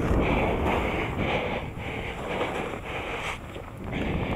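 Skis sliding through powder snow, a steady rushing hiss, mixed with wind buffeting the camera microphone; it eases off a little near the end.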